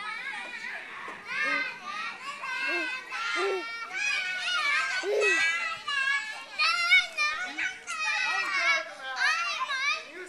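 Several young children shrieking and shouting at play, many high voices overlapping.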